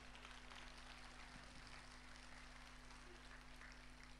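Near silence: a faint hiss with a low, steady hum.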